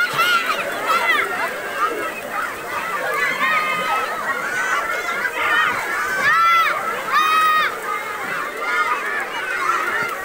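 Several people's voices, chiefly high children's voices, talking and calling out over one another without clear words, with two longer high-pitched calls about six and a half and seven and a half seconds in.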